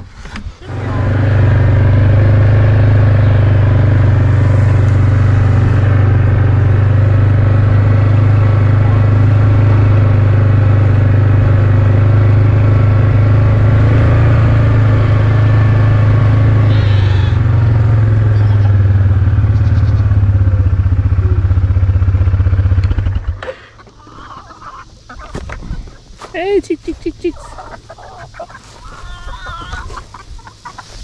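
Yamaha Grizzly ATV's single-cylinder engine running steadily, then shut off abruptly about three-quarters of the way through.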